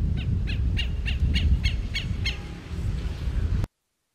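Southern lapwing (quero-quero) giving a run of about nine short, sharp, repeated calls, roughly four a second, over a steady low rumble; the sound cuts off abruptly near the end.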